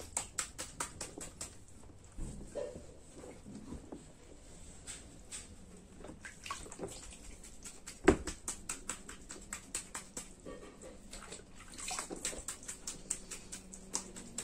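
Small splashes and drips of water in a plastic baby bathtub as a sponge is worked in the water over a baby: many short, irregular splashes, with one louder knock about eight seconds in.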